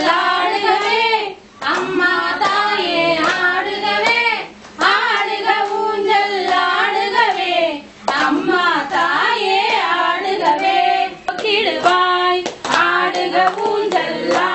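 Women's voices singing a Tamil devotional song in long melodic phrases with short breaks between them, with sharp hand claps scattered through the singing.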